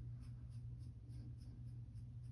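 Faint, quick scratching of a beard-colour applicator brush stroked through short beard stubble, about four strokes a second, over a low steady hum.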